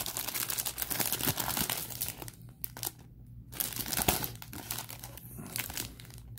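Clear plastic rack-pack wrapper of 1987 Donruss baseball cards crinkling and tearing as it is pulled open by hand. The crackling is densest in the first two seconds, then comes in lighter spurts around four to five seconds.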